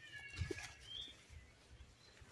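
A short, high-pitched squeal from a baby macaque near the start, with a bird's short rising chirp about a second in.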